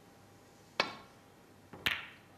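Snooker cue tip striking the cue ball, a sharp click under a second in, then a louder, sharper click about a second later as the cue ball strikes the yellow.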